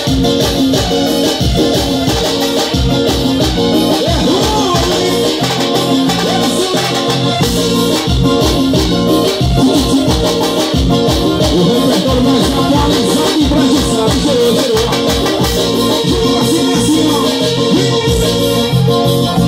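Live band music played on stage: electronic keyboard over hand drums, with a steady, driving beat.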